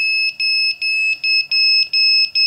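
MikroKopter FlightCtrl's buzzer sounding a high-pitched, repeated beep alarm, about three beeps a second of uneven length: the flight controller signalling failsafe after the radio signal is lost.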